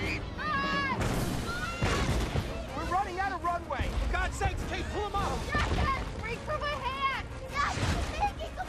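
Film soundtrack: frantic voices shouting and screaming, a child among them, over dramatic music and a continuous low rumble of explosions.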